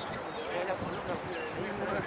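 Indistinct voices talking in the background, with a sharp knock about half a second in and another at the end.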